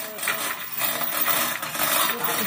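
Hand chain of a manual chain hoist rattling and clicking while it is pulled to lift a hung speaker stack, with voices talking faintly behind.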